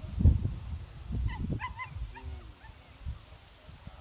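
A puppy whimpering, a few short high whines in quick succession about a second in and a lower one just after, over irregular low rumbling noise.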